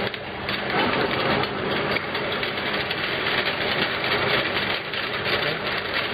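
Rotary bottle turntable of an e-liquid filling machine running, with 30 ml amber glass bottles clinking and rattling continuously against each other and the stainless steel guide rails, over a faint steady machine hum.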